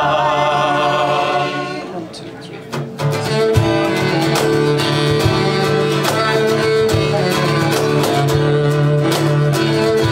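Live acoustic folk music: voices in harmony hold a long final note for about two seconds, then after a brief dip the instrumental section begins, with a bowed cello playing sustained low notes over steadily strummed acoustic guitar.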